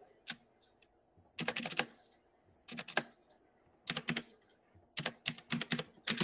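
Computer keyboard being typed on in short runs of a few keystrokes, with pauses of about a second between runs.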